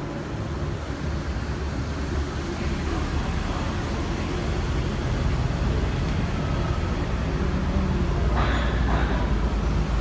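Car traffic inside a corrugated-steel vehicle tunnel: a steady low rumble of engines and tyres, growing slightly louder near the end.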